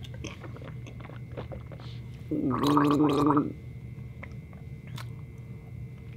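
Small sips and swallows from a plastic drink bottle, then a loud gargle lasting about a second, starting about two and a half seconds in, as she rinses a foul taste out of her mouth.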